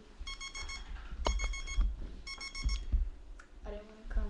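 Electronic alarm beeping in quick groups of four, about one group a second, three groups in all.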